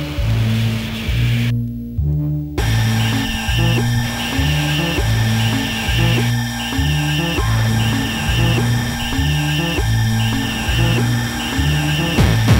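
Experimental electronic music: a low synth bass figure repeating about once a second under a buzzing, noisy texture. The upper layers drop out briefly about two seconds in, then return with steady high tones and a pulsing high figure.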